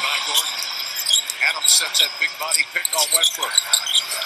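Basketball game broadcast audio: arena crowd noise with short, high sneaker squeaks and ball bounces on the hardwood court, under faint TV commentary.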